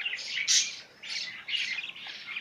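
Lovebird chicks cheeping: a rapid run of short, high-pitched calls, loudest about half a second in.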